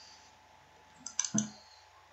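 A quick cluster of three or four sharp computer mouse clicks about a second in, over faint room noise.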